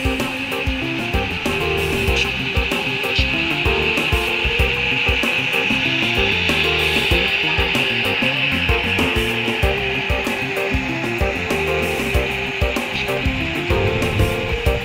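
A model train's metal wheels rolling along the track, a steady grinding hiss that is loudest midway as the cars pass close, over background music.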